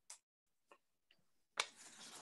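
A few faint, separate clicks, then from about one and a half seconds in a louder rustling noise, like a microphone or the device it sits on being handled.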